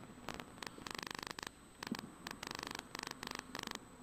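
Volkswagen R32 rally car heard from inside the cabin while braking into a bend. Its engine and drivetrain come through as a low buzzing in short pulsed bursts.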